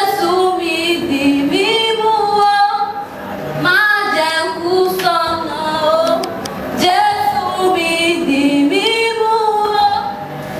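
A woman singing solo into a microphone, a slow devotional song in three long phrases of held, sliding notes.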